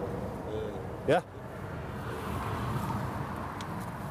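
Steady low rumble of motor vehicles, an engine or traffic running in the background.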